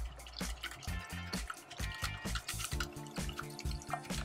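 Background music, with a wire whisk beating a thin liquid egg-yolk and lemon mixture against the sides of a small steel saucepan: a quick, regular, wet ticking of strokes.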